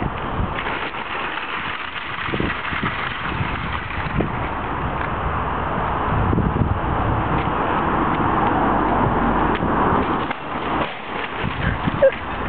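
Metal shopping trolleys rattling as they are pulled out of a line and rolled across tarmac, with a few sharp metallic knocks, under wind noise on the microphone.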